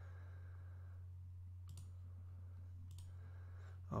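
Two faint computer mouse clicks, about a second apart, over a steady low electrical hum.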